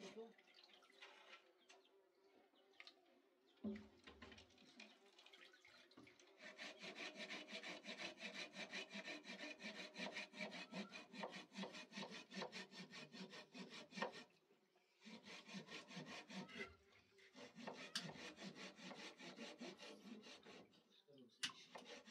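Faint, quick rhythmic rubbing strokes, several a second, from hands working raw meat over a metal bowl at a kitchen sink. The strokes start about six seconds in, pause briefly about two-thirds of the way through, then go on to near the end.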